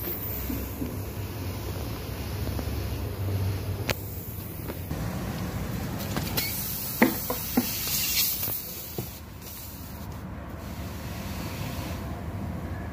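A car tyre puncture being repaired with a string plug tool: several sharp clicks and taps of the tool working in the tread, with a hiss of air for about two seconds around the middle, over a steady low hum.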